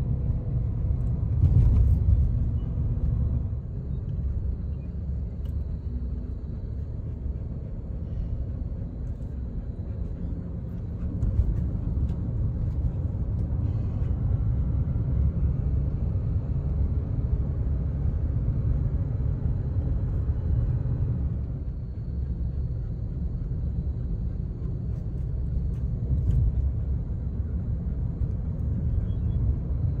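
Steady low rumble of a vehicle driving on a paved road, heard from inside the cabin: engine and tyre noise.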